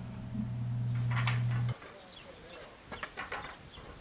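A steady low electrical hum, the same one that sits under the voice-over, cutting off suddenly a little under two seconds in. After it comes a faint background with a few faint, brief sounds.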